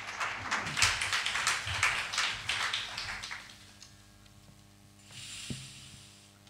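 A small audience applauding with scattered hand claps, dying away about three and a half seconds in. A soft thump follows near the end.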